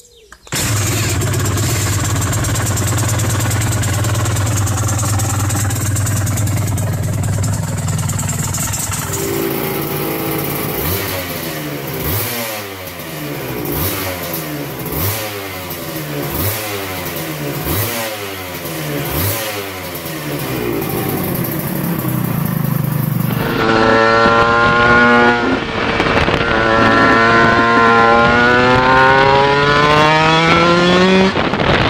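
Aprilia RS250 two-stroke twin: first running steadily at low revs, then blipped repeatedly, the revs rising and falling about every second and a half, then accelerating hard on the road with the engine pitch climbing in several rising sweeps through the gears.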